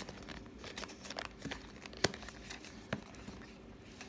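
Small cardboard box being opened by hand: faint rustling and scraping of the flap and box, with a few sharp ticks.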